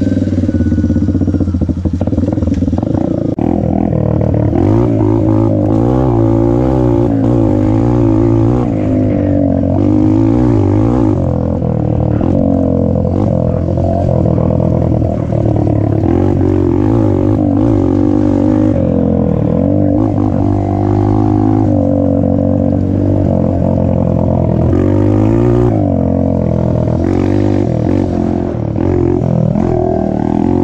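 Dirt bike engine running loud throughout, its pitch rising and falling with the throttle as the bike is ridden along a dirt trail.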